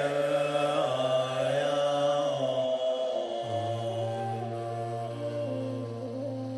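A man chanting a mantra solo in long held tones, his pitch stepping down between notes, with a short breath near the middle and then one long low note held to the end.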